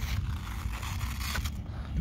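Steady rustling and scraping noise close to the microphone, over a low rumble.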